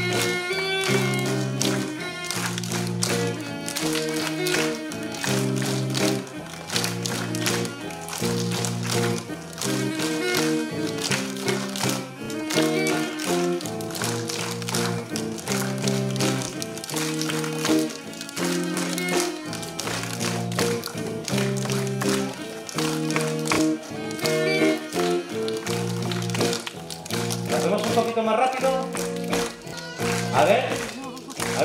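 A small flute plays a folk melody over a strummed and plucked acoustic guitar. Many soft finger snaps and two-finger claps keep the beat along with it.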